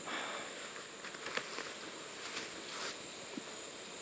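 Steady high insect drone over rainforest ambience, with a few soft rustles and clicks from wet clothing being handled.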